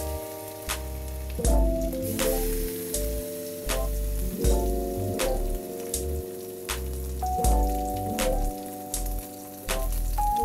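Salmon fillets searing skin side down in a very hot oiled nonstick pan: oil sizzling with scattered sharp pops. Background music with sustained chords and a bass line plays over it and is the louder sound.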